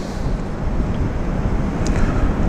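Steady low rumbling background noise with a hiss above it, unchanging and with no distinct knocks or strokes.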